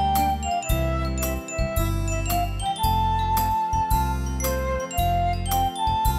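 Instrumental interlude of a simple children's church song played on a Yamaha PSR-S970 arranger keyboard, with no singing. A single melody line runs over a steady bass and beat, with light percussion ticks.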